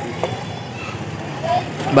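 Background voices over a steady low hum that is typical of a vehicle or street traffic.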